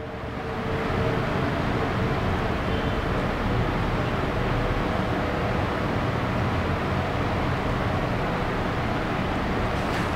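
Steady rushing background noise of the room with no distinct events; it rises slightly in the first second after the speech stops, then holds level.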